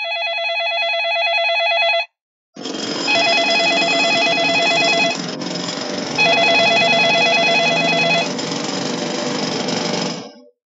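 An electronic ringer warbling in three bursts of about two seconds each, with a gap of about a second between them. From about two and a half seconds in, a loud steady noise sounds underneath the ringing.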